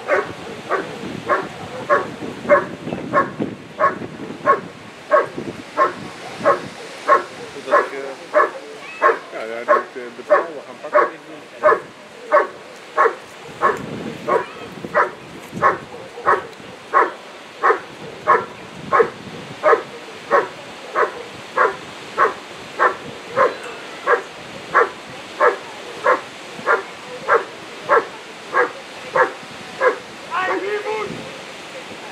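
A German Shepherd barking steadily at a hidden helper in the blind, a little over two barks a second in an even, unbroken rhythm. This is the hold-and-bark of IGP protection work: the dog has found the helper and holds him by barking without biting.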